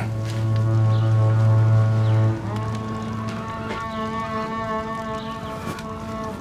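Background music of held, sustained chords: a deep low note sounds under the chord for a little over two seconds, then drops out as the harmony shifts to a higher chord.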